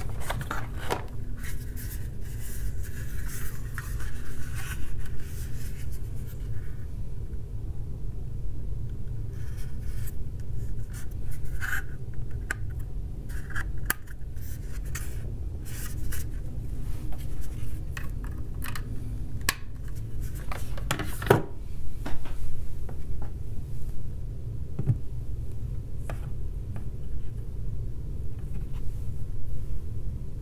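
Rubbing, scraping and scattered clicks of a plastic Millennium Falcon charging pad and its cable being handled on a wooden table, over a steady low hum.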